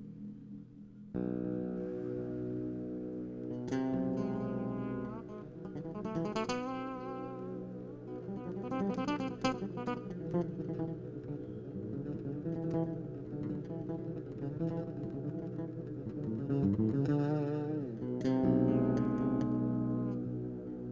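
Solo electric bass guitar played live through an amp: ringing, sustained notes and chords that come in suddenly about a second in, with notes sliding and wavering in pitch.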